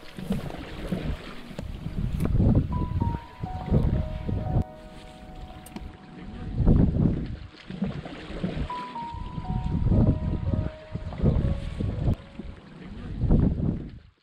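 Soft background music, a sparse melody of held notes, over rushing wind and lake water that swell and ebb every second or two.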